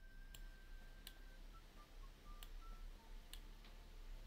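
Near silence: a few faint computer mouse clicks over a low hum.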